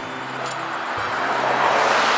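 A road vehicle passing close by, its tyre and road noise swelling as it approaches.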